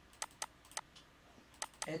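Computer mouse clicking: about five short, sharp clicks at irregular spacing.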